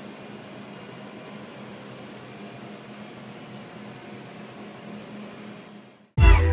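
Steady room noise: an even hiss with a low machine hum under it, such as a kitchen's ventilation or refrigeration gives. It cuts off suddenly near the end.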